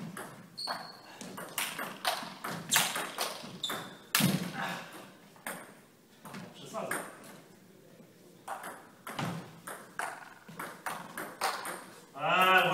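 Table tennis ball being hit back and forth between paddles and bouncing on the table during a rally: sharp clicks in quick irregular runs, with a lull of a couple of seconds between points a little past halfway.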